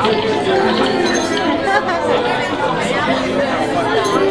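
Restaurant chatter: several voices talking over one another around a dining table, with glasses clinking now and then.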